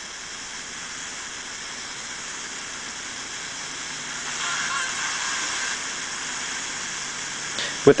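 Steady radio static hissing from a phone running a software-defined radio receiver (USB TV-tuner dongle) as it is tuned across the band. The static grows a little louder about halfway through, with faint thin tones in the hiss.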